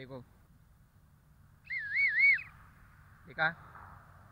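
Small plastic bike-silencer whistle blown once by mouth: a short, high, warbling whistle under a second long, its pitch wavering up and down about three times.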